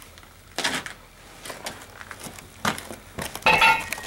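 A few separate light clicks and knocks, with a short cluster of them near the end, as hands and the camera move over cast iron boiler sections.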